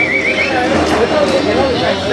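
People's voices calling and talking over each other, with a high, quickly wavering call in the first half-second.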